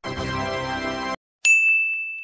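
Edited-in sound effects: a steady musical tone held for about a second, which cuts off; after a short silence, a single bright ding that rings on and slowly fades.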